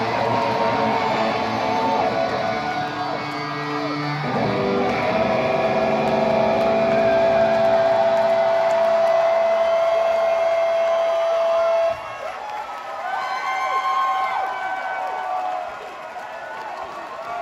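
Electric guitar left ringing through its amplifier as the song ends, settling into one loud, steady feedback note that cuts off suddenly about twelve seconds in. After the cut the crowd cheers and whistles.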